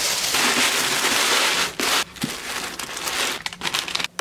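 Tissue paper crinkling as it is handled and pushed into a cardboard box. A dense rustle lasts about two seconds, then lighter scattered crinkles follow.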